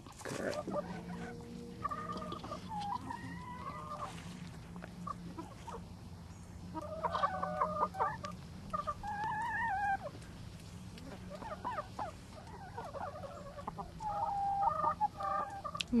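Several hens clucking and giving short, wavering calls in scattered bursts, over a low steady hum.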